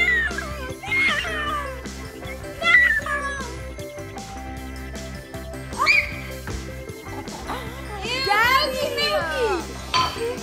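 Children's excited high voices, squealing and laughing, over background music with a steady beat; a longer run of shrieks comes near the end.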